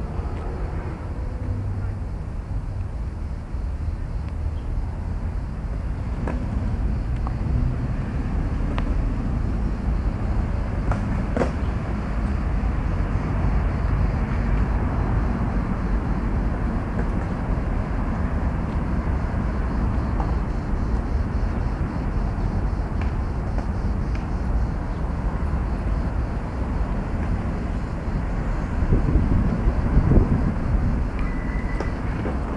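Steady low rumble of outdoor ambience with distant road traffic, and a few faint clicks.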